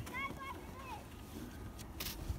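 Faint, distant children's voices: a couple of short high-pitched calls in the first second, over a steady low rumble.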